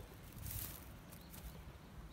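Faint footsteps and rustling in dry grass over a low rumble, with one brief louder rustle about half a second in.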